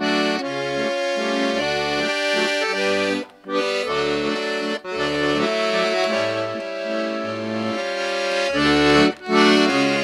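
Piano accordion playing an instrumental passage of a waltz tune, melody and chords over separate low bass notes. There are brief breaks in the sound about three seconds in and near the end.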